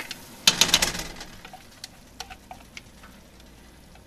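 Chopped relish vegetables being tipped and tapped out of a plastic measuring cup into a pot of hard-boiling sugar-and-vinegar syrup: a quick cluster of sharp taps about half a second in, then faint bubbling with scattered small ticks.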